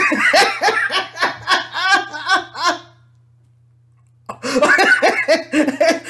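A man laughing in quick repeated bursts. He breaks off for about a second just after the middle, then laughs again.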